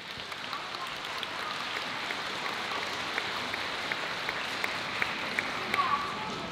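Audience applauding steadily at the end of a piece, with single sharp claps standing out in the second half.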